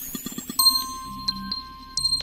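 Electronic logo sting: a rising synth sweep that lands about half a second in on a bright, ringing chime, with two small tinkling hits while it rings.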